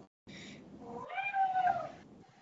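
A domestic cat meowing once, a single high call about a second in that rises slightly and then falls away.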